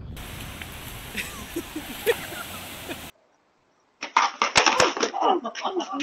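A laugh over steady outdoor noise, a short break, then sharp knocks and clatter about four and a half seconds in as a rider falls off a longboard onto concrete, with people crying out "Oh!".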